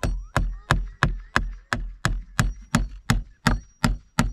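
Hammer striking nails into a wooden board, a steady run of about three even blows a second, twelve in all.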